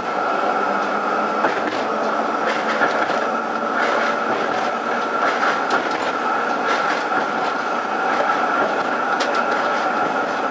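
Melbourne tram running along street track: a steady rumble of wheels on rail with a constant high-pitched tone and a few scattered clicks.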